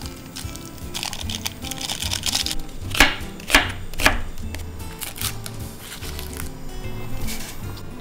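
Background music with a steady beat. About three seconds in, a knife cuts through an onion onto a wooden cutting board three times in quick succession.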